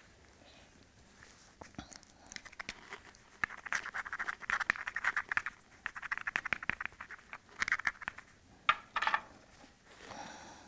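Hand-held abrading stone rubbed quickly back and forth along the edge of a Georgetown flint core, grinding the striking platform to prepare it for blade removal. The scraping comes in several short bouts of rapid strokes, starting a couple of seconds in.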